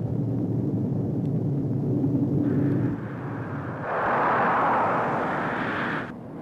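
Jet aircraft engine noise: a low rumble for the first three seconds, then a louder, higher rushing noise from about four seconds in.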